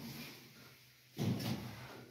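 The door of a Zremb Osiedlowy passenger lift being pushed open, a sudden clunk and rumble of the door about a second in after a brief lull.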